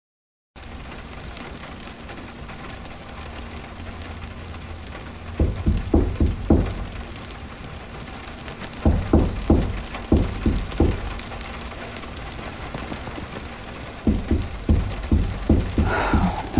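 Steady background hiss, broken by three bouts of heavy knocking, several blows each: about five seconds in, again around nine seconds, and near the end. The knocking is pounding on a door.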